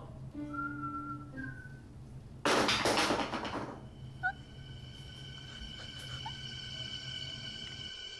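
Horror-film soundtrack: a steady low drone with a few short held notes, then a loud noisy hit about two and a half seconds in that dies away over a second, then steady high sustained tones.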